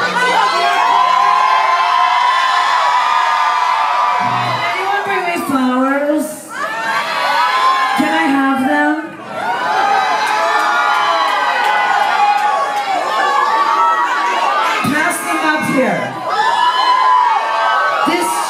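Concert crowd cheering, shouting and whooping, many voices overlapping, with two brief lulls about six and nine seconds in.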